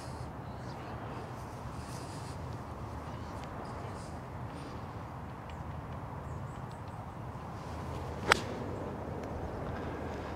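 A golf iron striking the ball on a 64-yard pitch from a tight downhill lie: one sharp, crisp click a little past eight seconds in. The only other sound is faint steady background noise.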